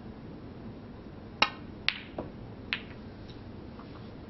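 A snooker shot: a sharp click of the cue tip on the cue ball, then three more clicks and knocks within about a second and a half as the balls strike other balls and the cushions, fading to two faint ticks.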